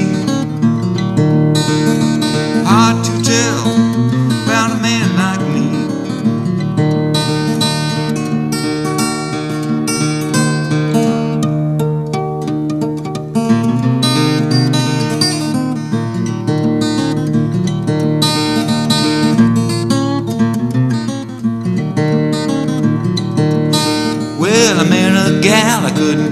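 Solo acoustic-electric guitar fingerpicked in a country-blues style: an instrumental break of quick plucked melody notes over low bass notes.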